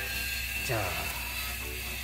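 Steady mechanical drone of construction machinery from a building site next door, with a steady high whine running through it.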